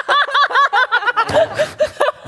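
Several people laughing heartily together, led by a high-pitched laugh in a quick run of short ha-ha pulses, about eight a second, which drops lower in pitch in the second half.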